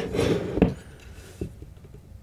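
Metal screwdriver scraping against the tacho coil at the end of a washing machine motor while prying at it: a rough scrape ending in a sharp click, then a lighter click near the middle.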